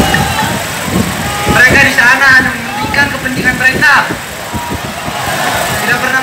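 Indistinct voice calling out over a horn loudspeaker, with a steady outdoor rumble behind it. The voice is strongest for a couple of seconds in the middle.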